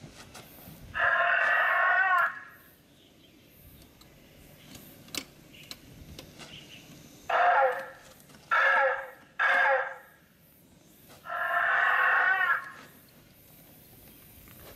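Velociraptor roar sound effect, of the kind played to match a dinosaur costume's moving mouth: one call about a second in, three short calls in quick succession in the middle, and one longer call near the end.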